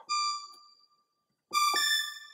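Helium software synthesizer playing a bell patch: a high bell-like note that rings and fades out within about a second, then a second, fuller note about a second and a half in.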